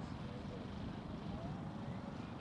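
Faint, steady sound of a distant radio-controlled model helicopter in flight, with its rotor pitch gliding slightly.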